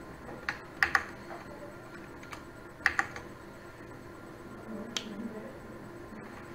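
A few separate computer keyboard keystrokes, not a steady run of typing: a single click, then two quick pairs of clicks about a second and three seconds in, and one more near five seconds.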